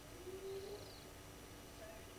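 Faint bird calls: a low cooing note about half a second long just after the start, with a faint high trill overlapping its end.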